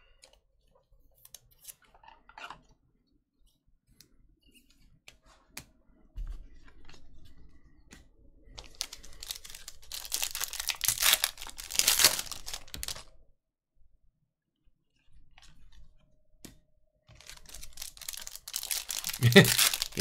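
Foil trading-card pack torn open by hand, its wrapper crinkling. The tearing is loudest from about 8 to 13 seconds in, with more rustling of the wrapper near the end.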